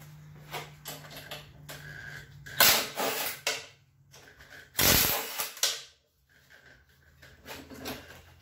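A cordless power driver spinning out the bolts of a small lawn mower engine's cover, in two runs of about a second each, with small clicks of the tool and bolts between them.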